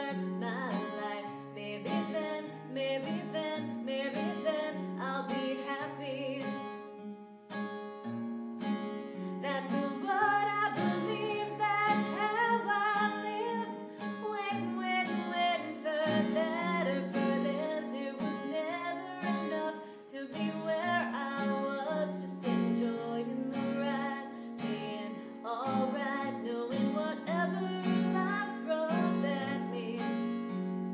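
A woman singing a song while accompanying herself on a strummed acoustic guitar, with brief pauses in the voice about a quarter of the way in and again about two thirds in.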